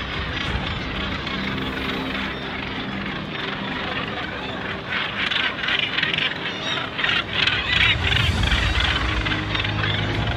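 A colony of northern gannets calling harshly as birds fight over nest sites, the calling growing denser and louder from about halfway. Soft background music with held notes runs beneath.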